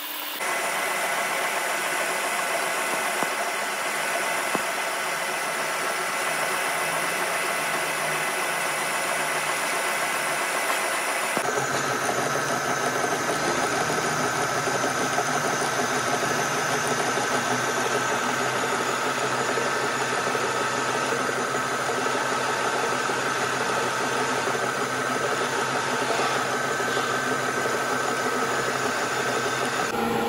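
Large engine lathe running steadily while turning the end of a steel hydraulic cylinder rod: a continuous machine hum with several steady whining tones. About eleven seconds in the sound changes abruptly and gains a deeper hum.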